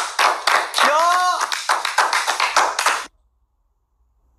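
A small group clapping their hands fast and together, with one voice shouting out about a second in. The clapping and shouting cut off suddenly about three seconds in.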